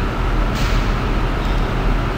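Steady background noise: a low hum under an even hiss, with a brief rise in the hiss about half a second in.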